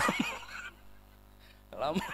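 A man's voice through a microphone: a drawn-out word that trails off into a short, quavering sound, then about a second of pause before he speaks again.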